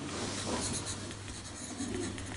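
Pencil writing on paper, scratching out a few handwritten letters.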